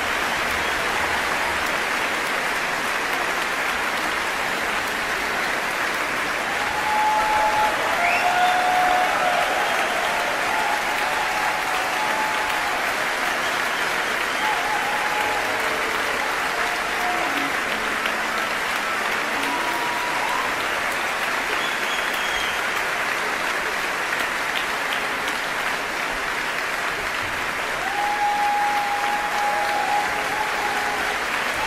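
A large audience applauding steadily, with a few shouts from the crowd rising above it about a third of the way in and again near the end.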